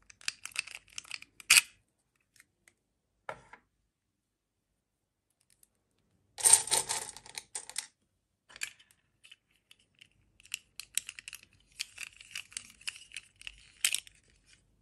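Small plastic dolls and clip-on dresses being handled over a metal muffin tin filled with plastic beads: scattered light clicks and rattles. A louder rattle of beads comes about halfway through.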